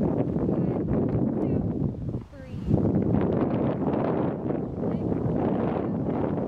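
Wind buffeting the microphone outdoors, a steady rumbling noise with a short lull a little over two seconds in.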